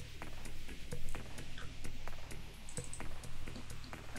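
Scattered clicks of computer keyboard keys as a few letters are typed, over a low steady hum.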